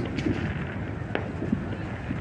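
Distant fireworks: one sharp pop just past a second in, over low, steady background noise.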